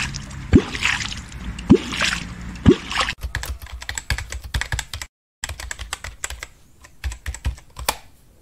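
A catfish clonk beaten into water three times, about a second apart, each stroke a deep plop that rises in pitch. From about three seconds in, rapid typewriter key clicks follow, with a short break in the middle.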